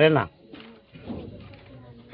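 A man's voice stops just after the start. In the pause that follows, a faint low bird call, of the pigeon or dove kind, is heard about a second in against quiet outdoor background.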